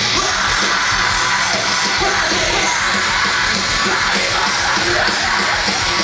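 Live metalcore band playing: distorted electric guitars and drums under screamed lead vocals, loud and dense throughout, heard from within the audience.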